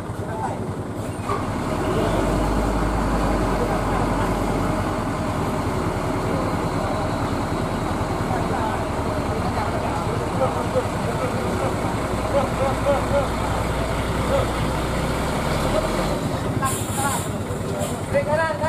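A heavy truck's engine running with a steady low rumble from about two seconds in, stopping near the end, under the chatter of a waiting roadside crowd.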